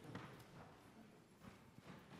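Near silence in a large hall, with a few faint knocks of footsteps as people walk up to the front.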